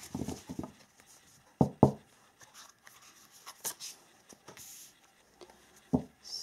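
Tarot cards being handled and drawn from the deck and laid down on a cloth-covered table: scattered soft taps and brief card rustles, with two sharp snaps close together a little under two seconds in.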